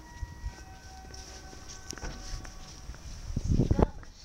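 A falling two-note electronic signal tone: a higher note for about half a second, then a lower note held for about two seconds. Near the end comes a quick run of loud low knocks.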